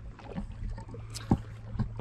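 Lakeshore ambience of water gently lapping against rock, with a few light knocks from the handheld camera being handled, the sharpest a little past the middle.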